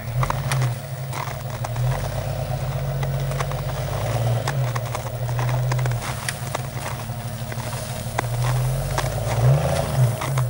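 Jeep Grand Cherokee engine pulling under load while the lifted SUV crawls through deep snow, with scattered crunching and crackling from the tires in the snow. The engine note rises briefly near the end as more throttle is given.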